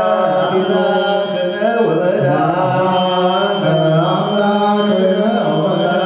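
Male clergy chanting an Ethiopian Orthodox liturgical prayer in a low, sustained, slowly moving melody. A faint steady high tone runs under the chant.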